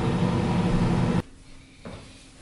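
Kitchen microwave oven running with a steady electrical hum that stops abruptly about a second in, leaving only quiet room sound.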